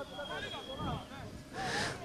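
Faint, distant voices of players shouting on a five-a-side football pitch, in short broken calls.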